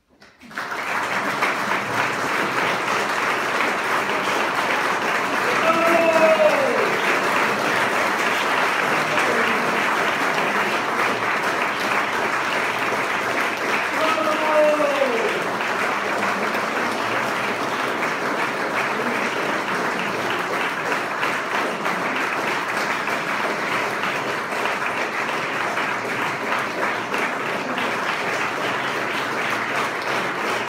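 Audience applauding steadily and densely, with two falling cheers rising above the clapping about six and fourteen seconds in.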